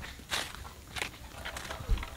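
Footsteps on a dirt path covered in dry leaves: a few separate crunching steps, the last one with a heavier low thump near the end.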